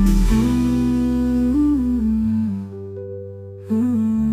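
Hindi romantic song passage with a wordless hummed melody of held notes gliding between pitches over soft sustained accompaniment. It goes quieter for about a second, then a new phrase comes in just before the end.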